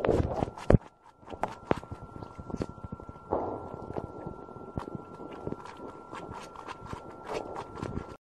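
A puppy's paws tapping and scratching at clear ice: a run of sharp, irregular clicks and knocks, the loudest right at the start and just before one second in, over a faint steady high tone.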